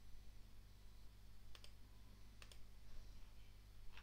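Computer mouse clicking, three sharp clicks about a second apart over a faint low hum.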